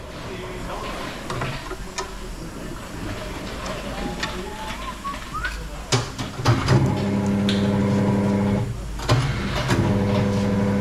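A metal tyre lever clicks and scrapes against a spoked motorcycle rim as the Shinko E270 tyre's bead is levered on. About seven seconds in, the tyre changer's electric motor starts a steady hum as it turns the wheel. It stops briefly near the end, then starts again.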